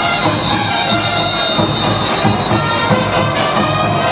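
Brass band playing caporales music, loud and continuous, with a long high note held through the first half.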